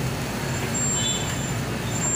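Steady low hum over a wash of background noise, with a faint high-pitched whine starting about half a second in.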